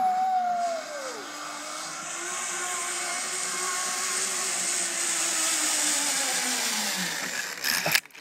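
Zipline trolley pulleys running along the steel cable as the rider comes in: a whirring hiss that builds, with a whine that slowly drops in pitch as the trolley slows, then a few sharp clacks near the end as the rider reaches the end of the line.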